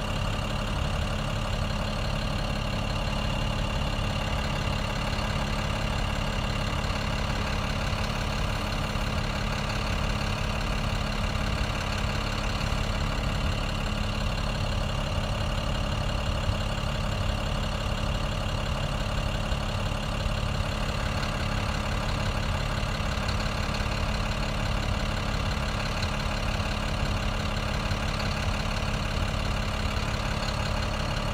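Vehicle engine idling steadily, heard from inside the cabin: a constant low rumble with a steady hum that does not change.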